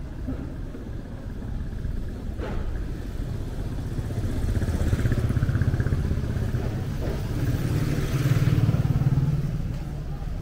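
Street traffic: motorcycle engines running past, the rumble swelling about halfway through and again near the end.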